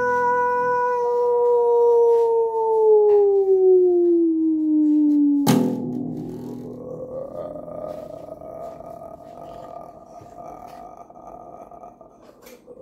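A long, howl-like held note that slides slowly down in pitch over about five seconds, ended by a sharp click; then a fainter second held note, rising slightly, that fades out near the end.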